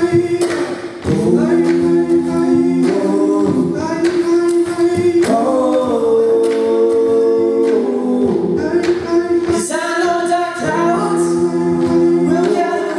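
Acoustic folk music: acoustic guitars under a sustained melody in close harmony, with several parallel notes held for a second or more and moving together.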